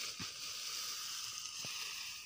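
Dry harvested crop stalks rustling and crackling as they are gathered up into an armful and lifted, a steady dry hiss with a couple of faint soft knocks.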